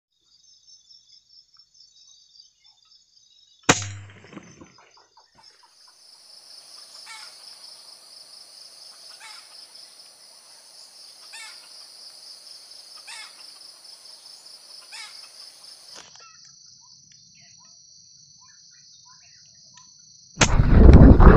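Steady high-pitched drone of forest insects, broken by one sharp, loud crack about four seconds in. From about six seconds a short call repeats roughly every two seconds over the drone, until both change abruptly near sixteen seconds.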